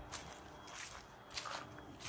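Faint footsteps walking, about four steps in two seconds.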